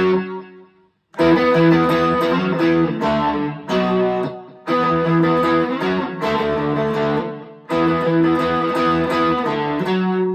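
Electric guitar on its neck pickup playing a riff of two-note fifths on the lower strings, open D with the G string at the second fret. The notes die away briefly about half a second in, then the riff plays over and over.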